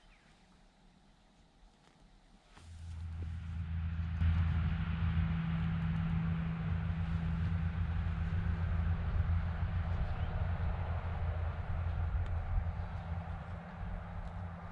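An engine running steadily with a low, even hum that comes in about two and a half seconds in and holds without rising or falling.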